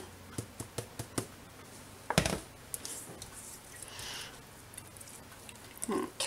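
Plastic spice containers handled on a wooden counter: a few small clicks, then one loud knock about two seconds in as one is set down. A soft rustle follows as seasoning goes onto a raw whole chicken.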